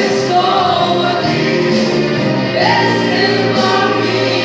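A woman singing a gospel song into a microphone over musical accompaniment, holding long, gliding notes.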